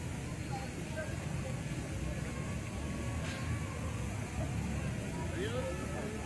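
Steady low rumble of city outdoor ambience, with faint distant voices chatting and a single short click about three seconds in.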